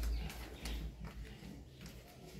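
Faint footsteps: a few soft thumps with light clicks, roughly half a second apart, as people walk across a concrete floor.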